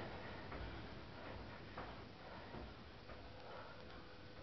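Faint, irregular taps and scuffs of trainers on the floor during quick side-to-side footwork, a handful of light clicks over a low background hiss.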